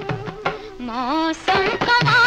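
Old 1960s Hindi film song with orchestral accompaniment. A quieter passage carries a single wavering, gliding melodic line, then the full ensemble comes back in loudly about one and a half seconds in.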